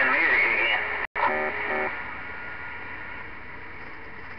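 Received audio from a CB radio's speaker: a warbling, wavering tone for about the first second, a brief dropout, a quick run of short beeps, then steady static hiss from the open channel.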